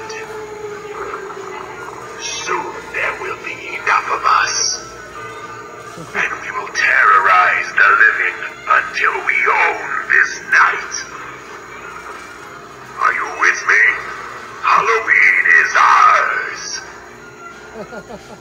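Giant animatronic skeleton prop, triggered by a step pad, speaking its recorded spooky phrases through its chest speaker in three spells, with music playing under it.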